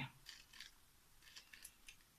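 Faint light scrapes and clicks of a diamond-painting wax pen tip picking up resin drills from a plastic tray, a few short touches spread over two seconds.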